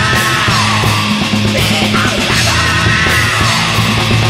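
Loud Japanese hardcore punk from a studio album: distorted electric guitar, bass and drums played hard under shouted vocals.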